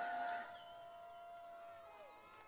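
A long, high held whoop from someone in the crowd cheering a graduate whose name has just been called, fading and dipping in pitch at the end.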